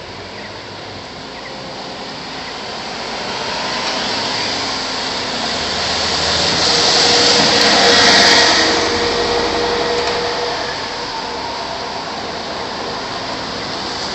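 Traffic on a rain-soaked street: a vehicle's tyres hissing on the wet road, swelling to a peak about eight seconds in and then fading, over steady traffic noise.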